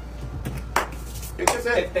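A single sharp knock about three quarters of a second in, then a man starts speaking in Spanish, over a steady low hum.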